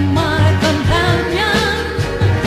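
Vintage soul record playing: a lead vocal sings over a band with a walking low bass line.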